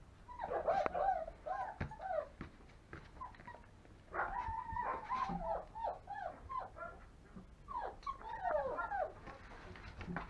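Five-week-old longhaired German Shepherd puppies whining and whimpering in three bouts of high, wavering cries, with short pauses between.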